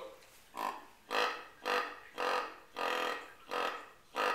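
Knight & Hale EZ Grunt tube call blown in a quick series of about six short grunts, roughly two a second, the last two a little longer. It imitates a rut-season buck grunting as he trails a doe, a buck trying to stop a doe.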